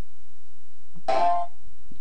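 A short slice of a sampled music recording played back through the Fruity Slicer in FL Studio: a single pitched note about a second in that rings briefly and fades within half a second, over a low steady hum.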